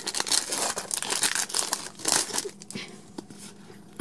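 A foil Pokémon trading-card booster pack being torn open and crinkled in the hands: a dense run of crackles that thins out over the last second or so.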